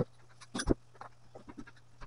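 Two short knocks from a plywood cabinet being handled and set in place, the louder one a little over half a second in, followed by faint scattered taps and light footsteps.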